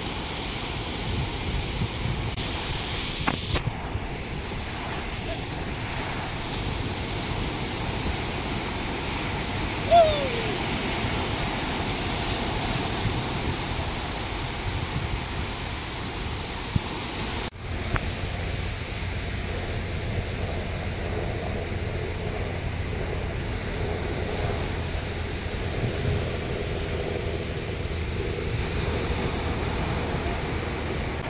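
Ocean surf breaking and washing up a sandy beach, a steady rush of waves, with wind buffeting the microphone. A short falling cry stands out about ten seconds in.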